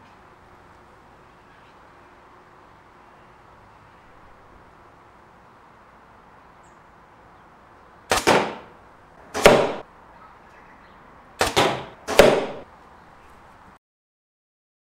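A 70 lb compound bow being shot, with its arrow striking the target: four sharp thuds in two pairs in the second half, each fading quickly.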